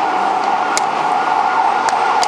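Wooden chess pieces being set down and a chess clock being pressed in fast blitz play: two sharp clicks about a second apart. Under them runs a steady high tone, held throughout.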